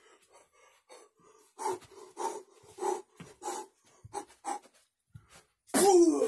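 A man panting hard in short, evenly spaced breaths, roughly one every half second, then a sudden loud cry near the end.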